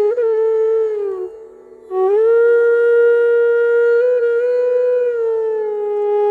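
Bansuri, a bamboo transverse flute, playing a slow melody: a note glides down and breaks off a little after a second in, a short breath pause follows, then a long held note from about two seconds in with small bends in pitch.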